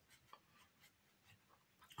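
Near silence, with a few faint scratches of a flat paintbrush working paint on canvas.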